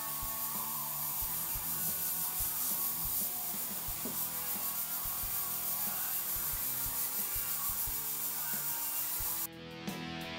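Airbrush hissing as fine detail strokes are sprayed, over soft background music. The hiss and music cut off sharply about half a second before the end.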